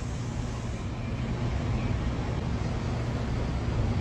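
Steady background noise: a low hum under an even hiss, with no distinct event.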